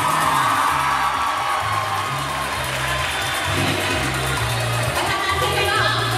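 A woman singing into a microphone over a pop backing track with a line of held bass notes, amplified through a PA.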